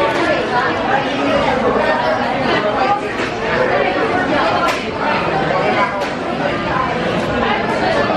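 Speech only: young people chatting, several voices talking at once.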